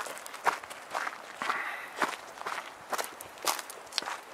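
Footsteps crunching on a gravelly dirt path, a steady walking pace of about two steps a second.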